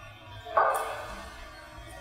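A man's single short hesitant "uh" through the lecture microphone about half a second in, then a low steady background until speech resumes.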